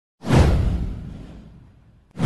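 A single whoosh sound effect with a deep low boom underneath, starting a moment in, sweeping down in pitch and fading away over about a second and a half.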